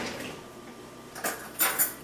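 Metal cutlery clinking as eating utensils are picked out, with a few quick clatters in the second half.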